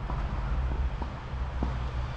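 Low, steady outdoor rumble with a few faint light ticks.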